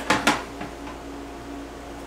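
A few brief knocks and rustles as a plastic immersion heater is picked up off the bench, then quiet room tone with a steady low hum.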